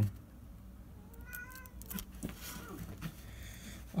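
A house cat meowing once, about a second in, the call rising and then falling in pitch.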